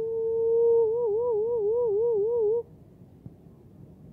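A person's voice singing one held high note in a joking way. It stays level for about a second, then wobbles in a wide, even vibrato and cuts off about two and a half seconds in.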